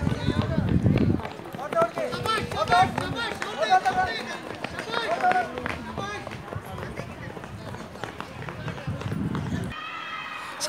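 Voices shouting and calling out at a children's footrace, with the running footsteps of the runners. There is low rumbling on the microphone at the start and again near the end.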